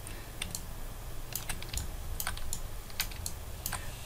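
Faint, irregular clicking of a computer keyboard and mouse being used, about a dozen light clicks at uneven intervals over a low steady hum.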